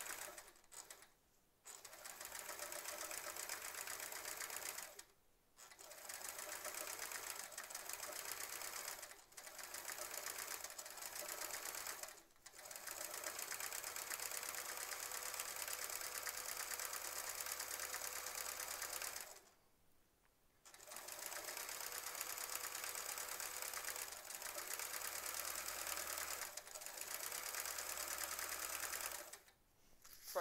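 Sewing machine stitching in free-motion quilting, running in spurts of a few seconds with short stops between them, the longest stop about twenty seconds in.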